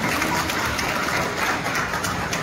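Audience applauding: steady clapping.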